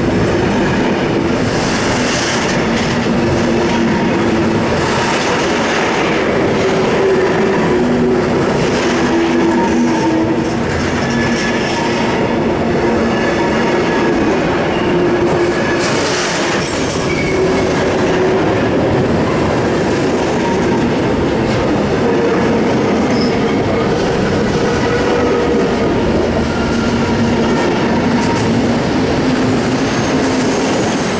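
Intermodal freight wagons rolling past close by: a steady, loud rumble of steel wheels on rail with regular clacking over the rail joints and a faint, wavering wheel squeal.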